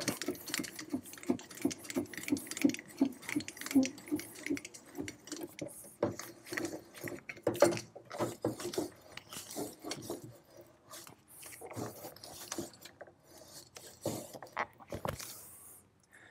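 Elevating mechanism of a 7.5 cm le.IG 18 infantry gun being hand-cranked, its gearing giving a steady run of metallic clicks and rattles as the barrel and the articulated shield section pivot up. The clicking stops shortly before the end.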